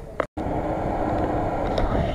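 Lada Niva's engine running steadily after a brief break in the sound near the start.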